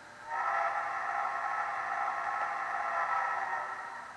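Simulated steamboat whistle from the model's Quantum Titan sound decoder, played through small onboard speakers: one long steady blast of several tones sounding together, starting just after the beginning and fading near the end.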